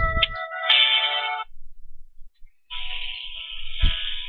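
Telephone hold music heard over the phone line, thin and cut off at the top. It breaks off about a second and a half in and starts again near three seconds, with a short thump just before the end.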